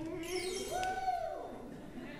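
A swooping musical note that rises and then falls away, played by the band as a magic sound effect, with a shimmering chime glissando sliding down early on.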